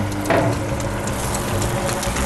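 A very hot clay tagine of fava beans being taken out of an oven, with a knock about a third of a second in over a steady hiss.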